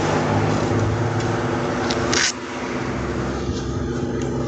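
Road traffic and a steady engine hum beside a highway, picked up by a police body-worn camera's microphone. A short hiss comes about two seconds in, after which the noise is a little quieter.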